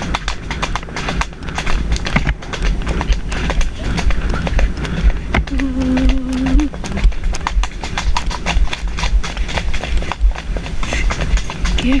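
A pony's hooves drumming on a dirt track at a canter, a fast run of hoofbeats, with wind rumbling on the helmet-mounted microphone.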